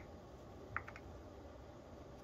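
Quiet room tone with two faint light clicks, one at the start and one about a second later, as a small brush knocks against a plastic epoxy cup.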